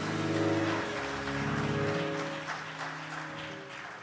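Church organ holding sustained chords that change twice, playing under a pause in preaching.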